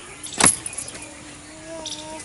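A single sharp blow of a long-handled digging tool striking the hard earth, about half a second in.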